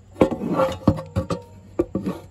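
Metal bicycle frame knocking and clattering against a wooden bench as it is handled and shifted, several sharp uneven knocks with a faint ringing tone after them.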